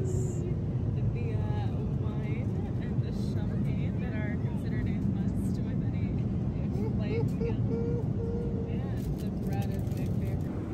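Steady low rumble of an airliner cabin in flight, engine and airflow noise, with quiet voices talking over it and a few light clicks near the end.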